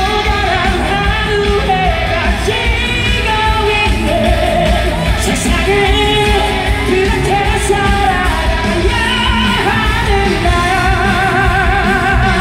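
Live pop song sung by a male singer over a loud amplified backing track, his voice held in long notes with vibrato, heard through the PA in a large hall.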